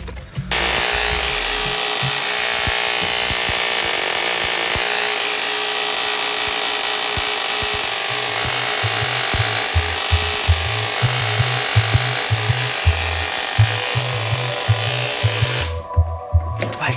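Home-built Tesla-coil ozone generator switched on about half a second in: its high-voltage discharge gives a steady hissing electrical buzz, which stops abruptly near the end. A music bassline runs under it from about halfway through.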